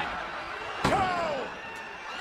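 Slam-like hit of an end-card sound effect about a second in, with a falling tone sliding down after it and fading over about half a second, over a steady hiss. It follows the tail of a similar hit just before.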